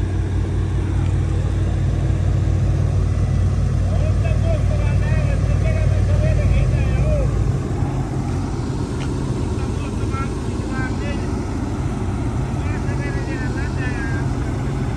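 Volvo EC210B crawler excavator's diesel engine running steadily under load, a deep drone that eases to a lighter, lower note about seven seconds in.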